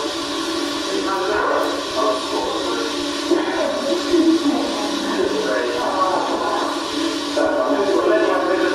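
Indistinct speech with music underneath.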